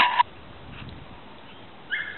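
A farm bird calling: a short loud call right at the start, then only low outdoor background, and another call beginning just at the end.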